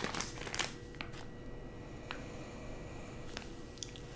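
Faint crinkling and rustling of a clear plastic bag being handled, with a few soft scattered clicks over a faint steady hum.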